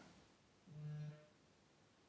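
Near silence, broken about halfway through by one short, quiet hum: a closed-mouth 'mm' held on one note for about half a second.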